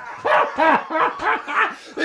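Men yelping in a run of short excited cries, each rising then falling in pitch, about three a second, amid laughter.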